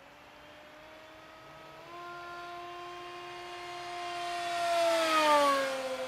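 LR-1 Racing Devil electric RC racing plane's motor and propeller whining at high speed. The pitch steps up about two seconds in, the whine grows louder, and near the end it peaks and falls in pitch as the plane flies past.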